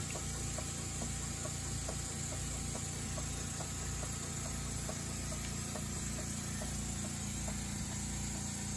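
Small oscillating-cylinder model engine running steadily on compressed air, with a light, regular ticking.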